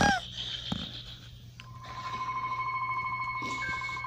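A steady high tone begins about a second and a half in and is joined by a second, higher steady tone.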